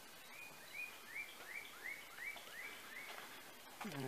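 A songbird singing a quick series of about nine rising whistled notes, about three a second, faint over quiet outdoor background.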